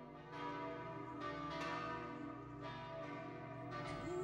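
Church bells ringing in a peal: several bells struck in turn, about once a second, their tones overlapping and lingering.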